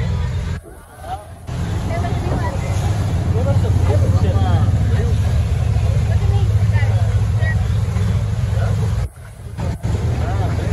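Low steady rumble of a moving tour boat's engine and water, under the chatter of passengers. The sound cuts out briefly twice, just under a second in and near the end.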